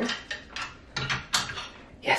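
Wooden clothes hangers with metal hooks clicking and knocking against a metal clothing rail as clothes are hung up: a few sharp clacks, most of them in the second half.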